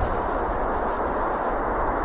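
Steady wind noise on the microphone: an even, low rumbling hiss with no distinct steps or other events.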